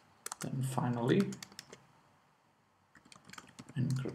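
Typing on a computer keyboard: a quick run of keystrokes near the start and another about three seconds in.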